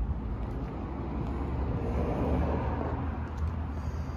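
A motor vehicle running: a low, steady rumble that swells slightly about two seconds in.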